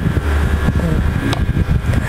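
A steady low rumble with a single sharp click about a second and a half in, the click from pressing the release on the air rifle's folding stock.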